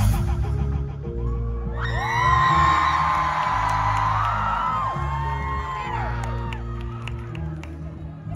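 Live band music stops just after the start, leaving held low chords and bass notes. Over them an audience cheers with high whoops and screams, loudest in the middle.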